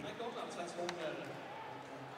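Ice hockey game sound in an arena: low crowd and rink noise with one sharp click of a stick or puck about a second in.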